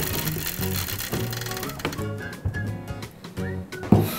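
Background music with a steady bass line. Over it, during the first two seconds, the plastic spinner of a Game of Life board game clicks rapidly as it spins. A single sharp knock comes just before the end.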